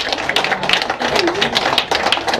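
Small audience applauding, a dense run of hand claps.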